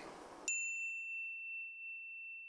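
A single clear electronic ding sounds about half a second in. Its higher overtones die away quickly, and one high pure tone rings on steadily against silence. It is a transition chime marking a chapter card.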